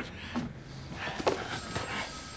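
Scuffling footsteps with a few light knocks and clothing noise, as in a brief struggle while a man is pushed along.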